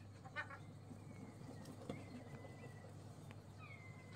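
Faint short animal call about half a second in, then a faint thin high call around two seconds, over low room noise.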